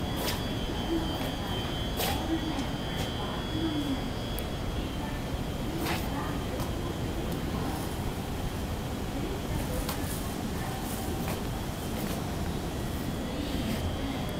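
Railway station platform ambience: a steady background hum beside a stopped electric commuter train, with faint distant voices in the first few seconds and a few scattered clicks.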